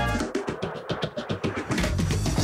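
Background music: an upbeat swing-style instrumental breaks for a quick drum roll, then the full band comes back in near the end.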